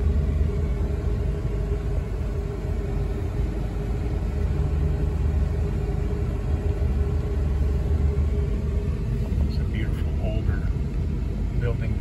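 Steady low road and engine rumble of a car driving slowly, heard from inside the cabin.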